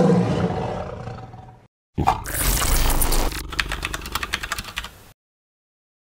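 A big-cat (tiger) roar sound effect, loud and falling in pitch, dying away by about a second and a half in. It is followed by a rushing whoosh that turns into a fast rattle and cuts off about five seconds in.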